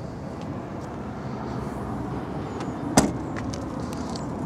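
The tailgate of a Hyundai i10 hatchback being shut, closing with a single sharp thud about three seconds in, over steady background noise.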